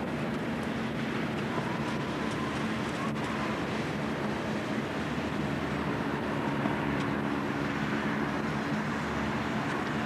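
Steady outdoor background rumble and hiss at an even level, with a faint low hum.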